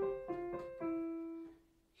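Piano playing a short right-hand phrase of single notes stepping downward, the last note held and dying away about a second and a half in.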